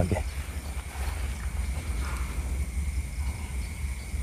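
Wind buffeting the microphone: an uneven low rumble, with a faint steady high-pitched tone running under it.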